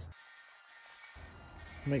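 Wood lathe spinning a bowl blank, a faint steady hum with hiss; the low hum comes in about a second in.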